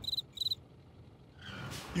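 Two short, high cricket chirps in quick succession at the start, followed by near silence.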